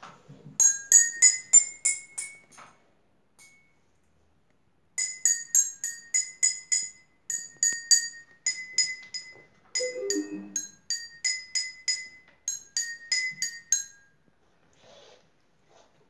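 Water-filled drinking glasses struck one after another with a spoon, ringing at different pitches: first a quick rising run of about seven notes, then after a pause a longer tune. The different water levels in the glasses give the different notes.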